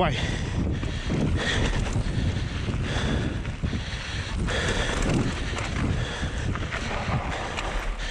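Wind buffeting an action-camera microphone as a mountain bike runs fast down a dry, rocky dirt trail. Knobby tyres roll over loose ground, and the bike knocks and rattles over bumps and stones.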